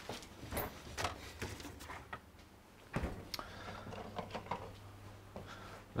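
Quiet kitchen with faint scattered clicks and knocks of things being handled, one louder knock about three seconds in, over a low steady hum.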